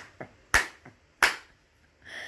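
Two sharp clicks, one a little after half a second in and one about two-thirds of a second later, with a few fainter ticks around them.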